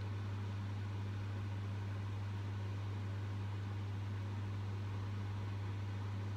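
Steady low hum with faint hiss: the background tone of a workshop, unchanging throughout.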